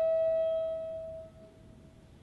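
Crystal flute holding one long note with clear overtones that fades away about a second in.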